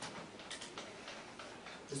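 Faint, irregular light ticks and taps from someone writing, about half a dozen over two seconds. A man's voice begins at the very end.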